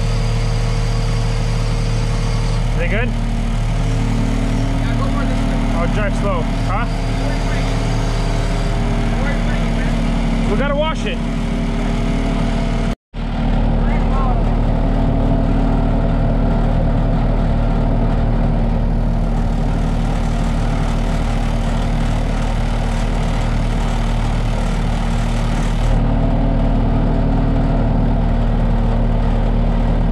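Skid steer loader's engine running steadily under load while the machine drives, carrying a tank on its front, with a momentary break about halfway through.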